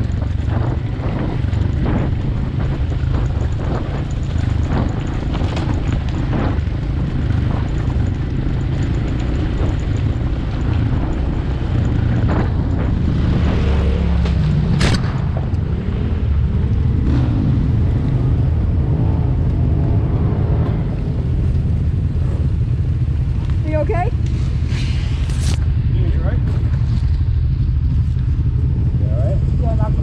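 Dirt bike engine running on a rough gravel trail, heard from the rider's helmet camera as a steady low rumble mixed with wind on the microphone, with scattered knocks throughout. A voice calls out near the end.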